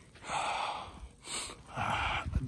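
A man's breaths close to the microphone: three breaths, the first the longest and a short sharp one in between.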